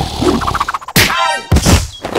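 Cartoon-style hit sound effects: two loud thunks about half a second apart, the first trailed by a falling tone.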